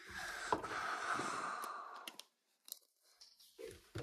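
A trading card sliding into a rigid clear plastic toploader, plastic rubbing and scraping for about two seconds, then a few light plastic clicks and taps.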